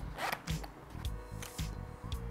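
A fabric microphone pouch being handled: a few short rustling, zip-like scrapes of cloth as a handheld microphone is worked out of it.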